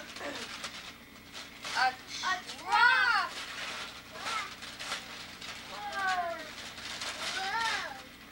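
High-pitched voices of young children, a string of short squeals and calls that rise and fall in pitch, several of them close together about two to three seconds in and more near the end.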